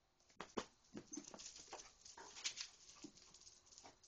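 Faint, quick taps and scuffs of a young basset hound's paws and a person's footsteps on a concrete patio during a chase game.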